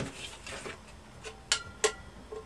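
Faint handling knocks, then two sharp metallic clicks about a third of a second apart near the end, the first with a brief ring: a tin can and a tape measure being handled at a desk.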